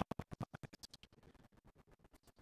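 A man's preaching voice chopped into rapid stuttering fragments by an audio glitch, so no words come through; it turns fainter and sparser in the second half.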